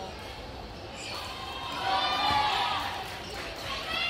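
A badminton rally in a large sports hall: shuttlecock hits and players' footwork on the court. In the middle comes a loud, drawn-out, high pitched sound, voice-like or squealing, rising and falling over about two seconds.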